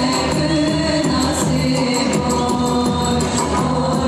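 Turkish folk dance music from the Kütahya region: singing voices over sustained melody instruments and a steady percussion beat.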